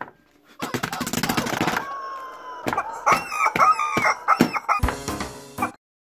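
Rubber chicken toy squeezed to force sauce out of its beak: a rasping sputter about half a second in, then a held squeal and a string of about six short squawks that stop suddenly near the end.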